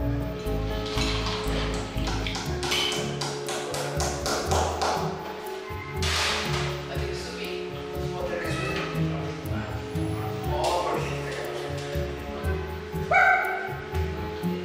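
Background music throughout, with a run of short clicks or taps a few seconds in and a brief voice-like sound near the end.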